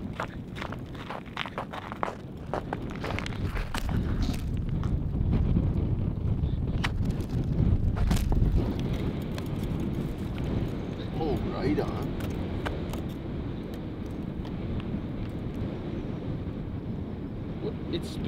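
Footsteps on snow-covered lake ice over the first few seconds, then wind rumbling on the microphone.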